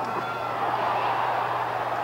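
Large cricket-ground crowd cheering, a steady din of many voices.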